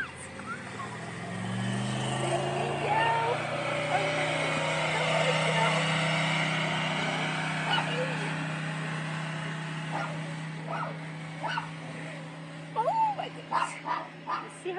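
A dog yipping and barking in short calls, more of them near the end, over the steady hum of an engine running that rises in pitch about a second in and then holds.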